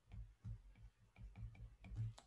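Faint clicks and soft knocks of a stylus tapping and writing on a tablet screen, several a second.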